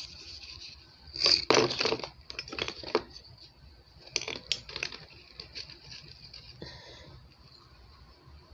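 Rustling and clicking of hands rummaging through plastic bags and packets of Christmas baubles. The loudest burst of crinkling comes about a second in, followed by scattered lighter clicks.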